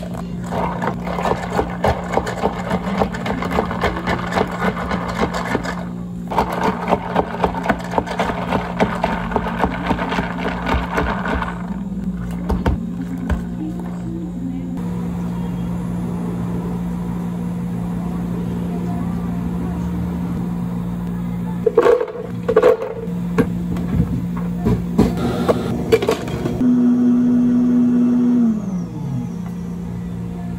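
Cafe drink-making sounds over a steady low appliance hum: plastic cups and dome lids handled with dense crackling and clatter, milk poured, a few sharp clicks, and near the end a short motor whir that winds down in pitch.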